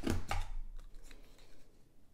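Stampin' Up! Detailed Trio corner punch pressed down, cutting a rounded corner into a piece of patterned paper: two quick crisp crunches with a low thump in the first half second, then faint handling.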